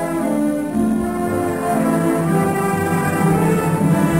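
Orchestral film accompaniment led by bowed strings: violins and cellos playing sustained notes in a slow-moving melody.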